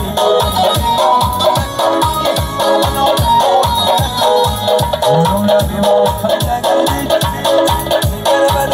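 Live dance music from a Korg arranger keyboard: a melody line over a fast, steady drum beat.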